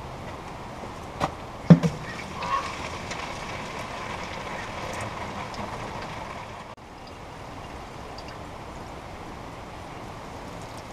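Windshield washer fluid draining from a sawmill's blade-lube tank and running steadily into a plastic gallon jug, with two sharp knocks a second or two in.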